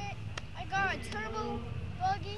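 A young child talking in a high voice, answering in short phrases, over a steady low rumble. A single sharp click comes about half a second in.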